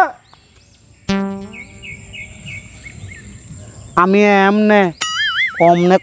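Comic sound effects. About a second in, a sudden buzzing tone fades away over about a second, followed by a few quick high chirps. About four seconds in comes a drawn-out vocal cry with sliding pitch, then a wavering, wobbling whistle.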